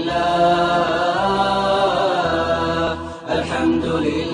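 Unaccompanied chanted vocal, a voice holding long melodic notes and gliding between them, with a short break for breath about three seconds in.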